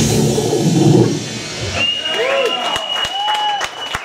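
A heavy metal band's last loud chord rings on and cuts off about a second in. Scattered audience shouts and a few claps follow, over a thin steady high tone that is likely amplifier feedback.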